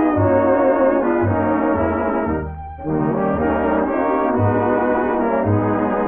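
Vintage 1930s–40s swing record in an instrumental passage: a brass section playing over a stepping bass line, with a brief break in the music about two and a half seconds in.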